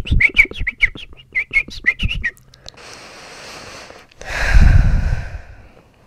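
A person imitating bird chirps with the mouth: a quick string of about a dozen short, high chirps over two seconds. A soft, steady hiss of breath follows, then a louder breathy rush of air about four seconds in.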